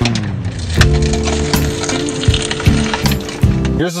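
Crunching bite into a fried hash brown and chewing, close to the microphone, with a sustained low musical chord under it from about a second in until just before the end.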